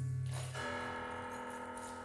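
Improvised chamber music with grand piano: a low held note gives way, about half a second in, to a struck, bell-like chord with many overtones that rings on.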